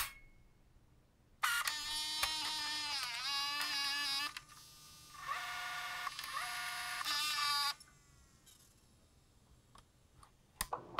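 A sharp mechanical click, then a buzzy electronic tone with many overtones that wavers and bends in pitch for about six seconds, dipping and breaking off partway, and cutting off suddenly near the end.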